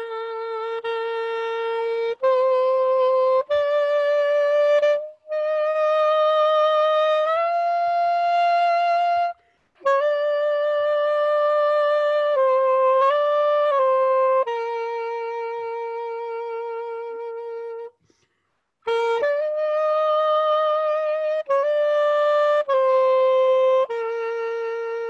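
Unaccompanied soprano saxophone playing a slow melody in sustained notes with vibrato, broken by brief breath pauses. It holds one long note in the second half.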